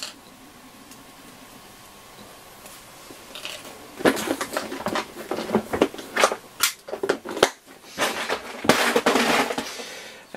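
Workbench handling noise. After a few seconds of quiet room tone, a run of small clicks, taps and rustling begins about four seconds in and grows denser near the end.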